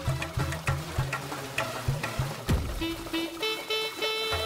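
Background music with a steady drum beat. Held melodic notes come in near the end.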